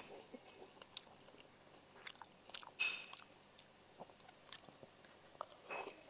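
Faint eating sounds of a man eating pempek: quiet chewing with small scattered clicks of a fork on a plastic bowl, and two short, slightly louder sounds about three seconds in and near the end.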